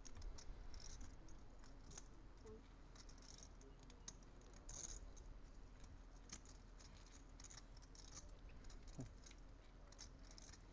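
Near-silent table ambience with faint, scattered clicks of poker chips being handled, with a few short rattles of chips.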